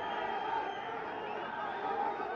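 Footballers' voices on the pitch, several men shouting and calling over one another, faint and overlapping: players protesting a referee's call.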